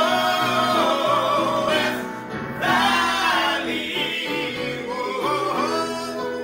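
Gospel praise-and-worship song sung by a man and a woman together, with long held notes over a musical accompaniment.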